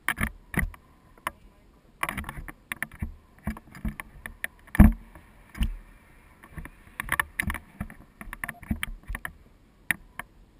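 Irregular knocks, clicks and scrapes of handling noise on a handheld camera and its mount, loudest in a single sharp knock about five seconds in.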